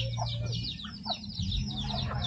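Chickens calling: many short, high-pitched, falling peeps overlapping in quick succession, with a lower cluck near the start, over a steady low hum.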